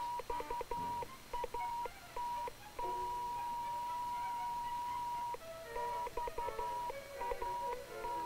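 Electronic signal tones of a radio beacon: a steady high beep keyed on and off in short and long pulses, held for about two and a half seconds in the middle, with clusters of lower blips between.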